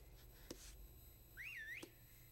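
Near silence with a few faint clicks, and one short warbling whistle that rises, dips and rises again about one and a half seconds in.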